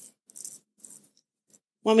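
A short pause in a two-woman podcast conversation with a few faint, brief clicks and murmurs, then a woman starts speaking near the end.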